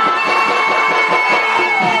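Loud live stage music through a concert sound system, with no singing: held high tones, a tone that slides downward in the second half, and a quick run of short low beats underneath.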